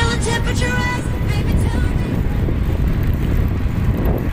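A song in the first second gives way to a steady low rumble of wind and road noise on the microphone of a moving bicycle.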